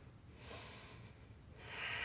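A woman's faint breathing through the nose while holding a core-strength hover on hands and knees: a soft breath about half a second in and a louder one near the end.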